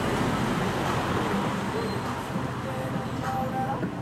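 A car driving past close by, its tyre and engine noise easing off as it goes.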